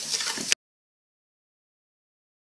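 A utensil stirring and scraping sugar and butter in a stainless steel mixing bowl, ending with a sharp click about half a second in, when the sound cuts off suddenly into silence.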